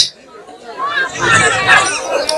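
Only speech: after a short lull, quieter voices talking, softer than the amplified lines either side.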